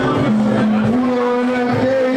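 Amplified live music in which a voice holds long sung notes, each note steady for about a second before stepping to another pitch.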